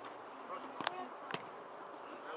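Two sharp thuds of a ball being struck, about half a second apart, over faint distant voices on the pitch.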